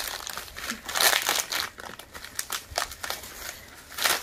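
Thin plastic bag crinkling and rustling as a chunk of amethyst geode is worked out of it by hand, busiest about a second in and thinning out toward the end.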